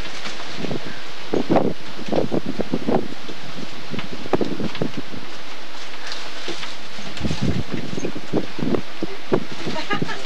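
Plastic food bags crinkling as they are handled, over a steady hiss, with indistinct voices and a short laugh.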